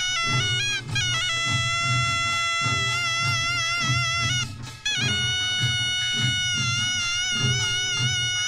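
Korean traditional folk music: a loud reed wind instrument plays a long-held melody that steps between notes over a steady drum beat. It breaks off briefly about halfway through.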